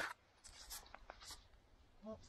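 Faint scraping and rustling of loose forest soil and dry leaves being disturbed at a freshly dug hole, a sharp click at the start and then a handful of short scratchy strokes.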